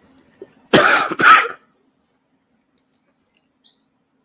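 Two loud coughs in quick succession.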